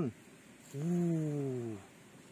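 A man's voice: one long, drawn-out wordless exclamation about a second long, sliding steadily down in pitch.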